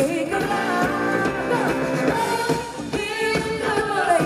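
Live pop-rock song through an outdoor festival PA: a woman singing long held notes over keyboard, guitar and drums, heard from in the crowd.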